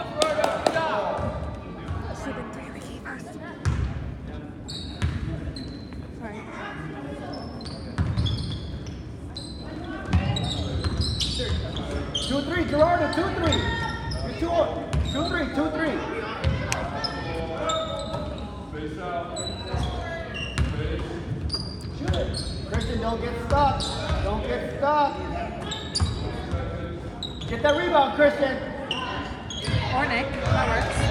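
Basketball bouncing on a hardwood gym floor during play, amid overlapping voices of players and spectators, all echoing in a large gymnasium. The sound grows louder about ten seconds in.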